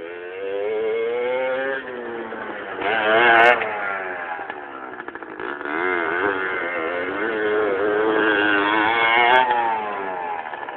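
Dirt bike engine revving up and down with the throttle as it rides and turns, the pitch repeatedly rising and falling. It is loudest about three and a half seconds in and again around nine seconds.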